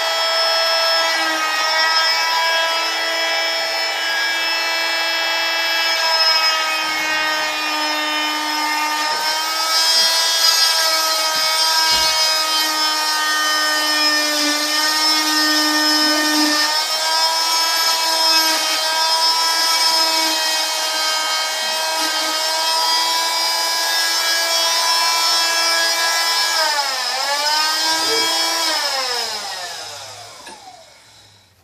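Oscillating cast saw running with a steady high whine as it cuts through a cast. Its pitch sags briefly under load near the end, then it winds down and stops as it is switched off.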